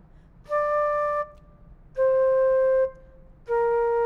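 Flute playing three held notes going down, D, C and B flat, each lasting under a second, with short pauses between them.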